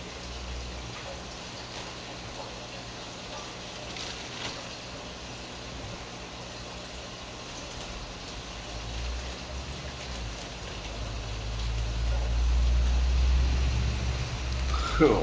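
Steady bubbling, watery noise of aquarium air and filtration, with plastic fish bags being handled now and then. A low rumble swells over the last few seconds.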